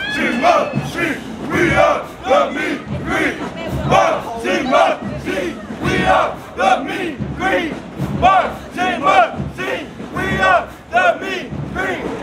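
A group of marching band members chanting together as they walk, loud shouted calls in a steady rhythm of about two a second.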